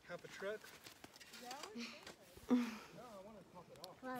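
People talking quietly in the background, their words indistinct, with a brief louder burst about two and a half seconds in.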